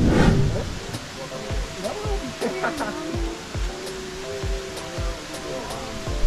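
Steady rush of falling water from a waterfall, with people's voices over it and a few short low thumps.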